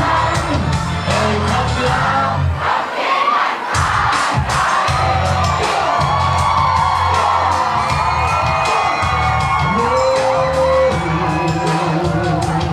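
Live amplified pop music with a heavy bass beat and performers' voices on microphones, over a cheering, whooping crowd. The bass drops out for about a second around three seconds in, then comes back.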